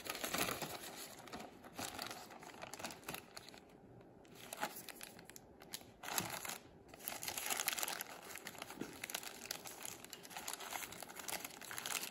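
Plastic zip-top bag and brown paper wrapping crinkling and rustling as hands open them, in irregular bursts with a brief lull about four seconds in.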